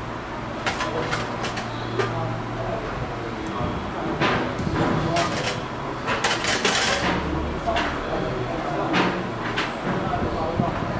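Metal surgical instruments clicking and clinking in short, scattered strikes during suturing, over an indistinct murmur of voices and a low steady hum.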